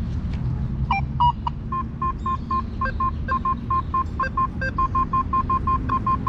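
Quest V80 metal detector sounding a target signal: a run of short beeps at one mid pitch, about five a second, with a few higher beeps about a second in, over a low background rumble. It is a mid tone of the kind that both aluminium foil and gold rings give.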